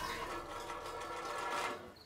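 Cartoon car engine sputtering and rattling as it dies, fading out near the end.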